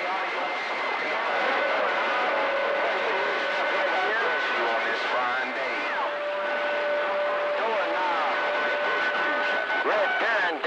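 CB radio receiving on channel 28: a steady hiss of band static with long, steady whistle tones from other carriers on the channel, and weak, garbled voices warbling through the noise.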